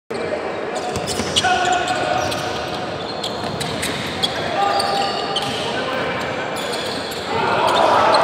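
Live basketball game in a large arena: a ball bouncing on the hardwood court, short sneaker squeaks, and players' and crowd voices echoing through the hall. The crowd noise swells near the end as a player goes up at the basket.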